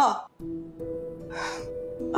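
Background music: a soft, sustained chord of held notes, with a short, sharp intake of breath about a second and a half in.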